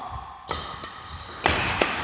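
Badminton rallying on an indoor court: a few sharp hits of rackets on a shuttlecock and thuds of feet on the court floor, one about half a second in and two louder ones near the end.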